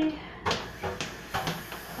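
Three sharp knocks of things being handled at a kitchen counter, about half a second apart, the first about half a second in.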